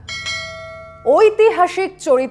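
A single bell chime struck once and ringing out, fading over about a second: the notification-bell sound effect of a subscribe-button animation. A woman's voice starts about a second in.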